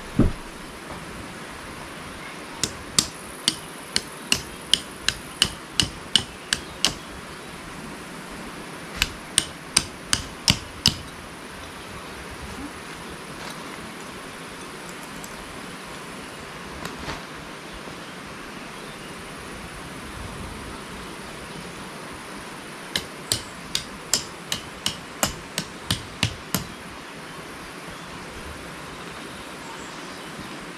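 Metal tent pegs being hammered into the ground: three runs of quick, ringing strikes at about two a second, with pauses between the runs.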